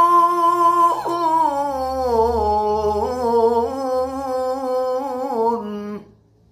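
A man reciting the Qur'an in melodic tilawah style, on one long held vowel. The note is richly ornamented with small wavering turns and slides gradually downward in pitch, then breaks off at the end.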